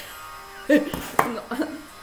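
A woman's voice, brief laughing sounds about a second in, over faint background music.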